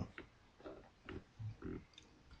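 A man's quiet laughter: a few short, breathy chuckles in quick succession.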